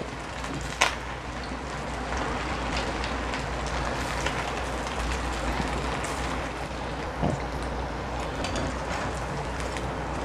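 Hot oil sizzling steadily as rice pakoda batter deep-fries in a kadai, with a brief click about a second in.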